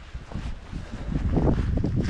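Wind buffeting the microphone: an uneven low rumble that gusts, growing a little stronger about a second in.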